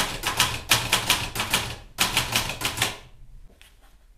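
Vintage manual typewriter being typed on: quick runs of key strikes with a short break about two seconds in, stopping about three seconds in, followed by a few faint clicks.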